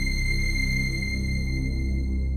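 Drama background score: a held high tone over low sustained notes.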